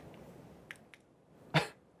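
A man's short breathy snort of laughter near the end, after a couple of faint clicks from handling a strap-on LED glove light.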